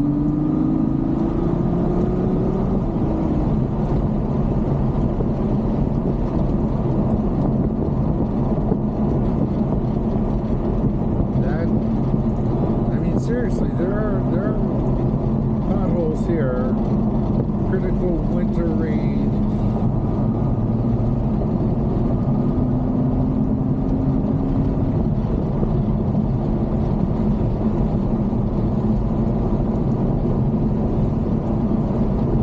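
Ferrari GTC4Lusso cruising on the open road, heard from inside the cabin: a steady engine drone over road and tyre noise. The engine note climbs briefly in the first few seconds.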